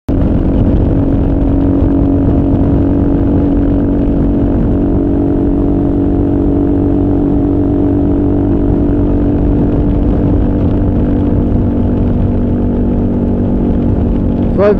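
Kawasaki KLR single-cylinder motorcycle engine running steadily at highway cruise, about 85 mph at around 6,000 RPM, which is a little high for this bike, with wind rush underneath. The pitch holds level throughout.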